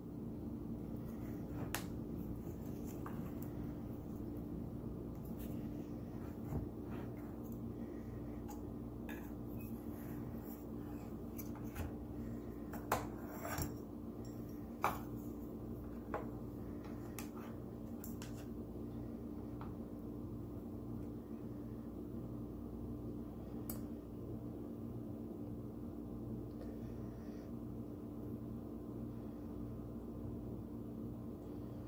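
A kitchen knife clicking and scraping against a metal baking pan while cutting a baked dish, with a few sharper clicks about halfway through. A steady low hum runs underneath.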